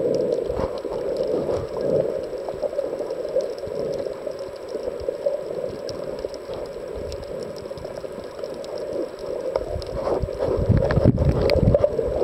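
Muffled underwater sound picked up by a submerged camera: a steady water rush with scattered small clicks and crackles, growing louder with low rumbling near the end.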